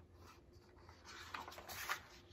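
Paper page of a hardcover picture book being turned by hand: a brief rustle starting about a second in and growing louder toward the end.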